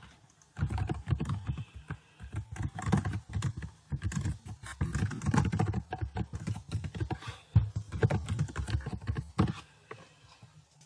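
Typing on a computer keyboard: fast runs of key clicks with a few short pauses, starting about half a second in and stopping just before the end.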